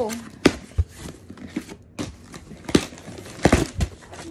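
Cardboard shipping box being opened by hand: cardboard rustling and scraping as the taped flaps are pried up and pulled open, with several sharp knocks and clicks, a close pair of them near the end.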